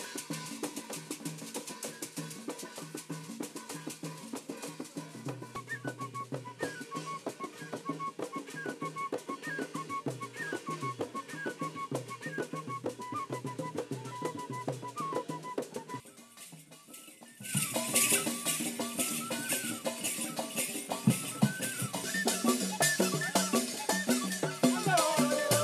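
Traditional Kenyan coastal music: drums beat a steady rhythm under a wooden flute playing a repeated run of short high notes. After a brief drop just past the middle, louder and brighter music with a wavering high melody and rattling percussion takes over.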